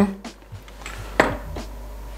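A single short knock about a second in, followed by a few faint ticks, as a small salt container and spoon are put down on the kitchen counter, over a low steady hum.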